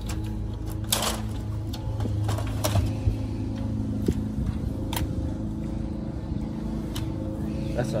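Several sharp plastic clicks and knocks as a laser printer's front cover is worked open and its toner cartridge is lifted out, under steady background music.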